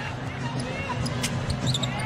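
Arena crowd murmur during live basketball play, with a basketball bouncing on the hardwood court.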